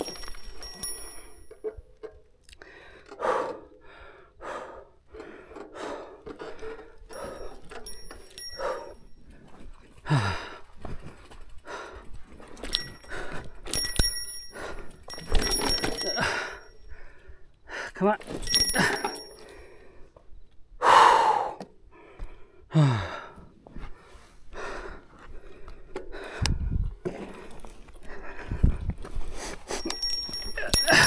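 A mountain biker breathing hard after a steep climb: panting, with several long sighing exhales that fall in pitch. Scattered knocks and rattles come in between.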